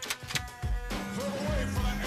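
Soundtrack music with a steady beat, a melody coming in about a second in, and two sharp knocks near the start.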